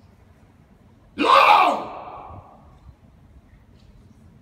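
A man's loud shout ringing out in a vaulted brick casemate corridor, starting about a second in, falling in pitch and trailing off in echo for about a second.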